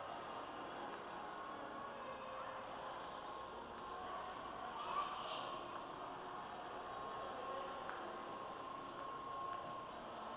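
Faint, steady indoor room ambience with a low hiss and a faint steady tone, and one short sharp sound about five seconds in.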